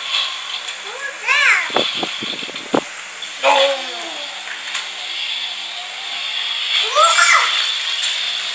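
A young child's voice calling out in short rising-and-falling squeals, with a few sharp knocks about two seconds in as small toy cars are handled on a hard tiled floor.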